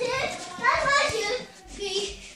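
A young child's high-pitched voice calling out in play, without clear words: a long call in the first second and a shorter one near the end.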